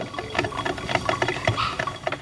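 Black & Decker drip coffee maker brewing, with a dense, irregular sputtering and gurgling.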